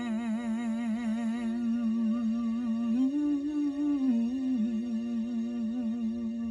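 A woman's voice holds the song's final note with a steady vibrato, sung open-mouthed at first and then closing into a hum. About halfway through it lifts a step higher for a second or so before settling back to the held note.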